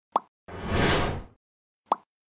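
Animated logo sound effects: a short pop, then a whoosh that swells and fades about half a second in, then another short pop near the end.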